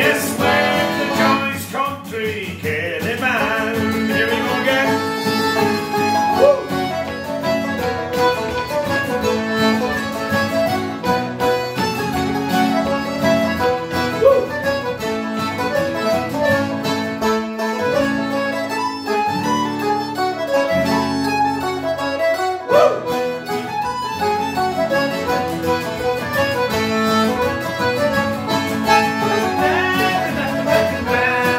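Instrumental break of an Irish ceili-style song: piano accordion, mandolin and banjo playing the lively melody together over a strummed steel-string acoustic guitar, with no singing.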